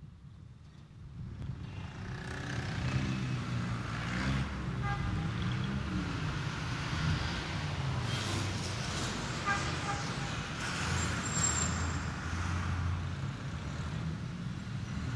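Road traffic ambience: a steady rumble of passing vehicles that fades in from near silence over the first two seconds, with a few short higher tones above it.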